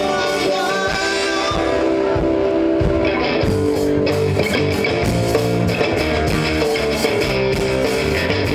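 Live rock band playing an original song on electric guitars, bass guitar and drum kit, at a steady full volume.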